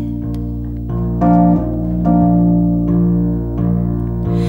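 Instrumental break in a slow song: electric piano chords held and changing about a second in, over steady low bass notes, with no singing.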